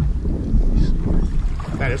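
Wind buffeting the microphone on a kayak on open water, a loud, uneven low rumble that sets in suddenly. A man's voice begins near the end.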